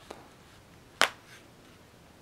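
A single sharp plastic click about a second in, with a fainter tick just after: one of the small latches holding the Dell Venue 11 Pro's back cover popping loose as the cover is pried up.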